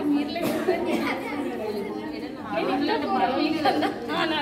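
Several people chattering at once, with voices overlapping.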